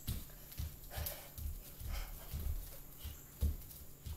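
Children's feet stomping and hopping on a floor while they dance, dull thumps coming about three times a second in an uneven rhythm.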